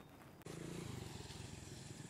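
Near silence, then, about half a second in, faint motorcycle engines running steadily on a road.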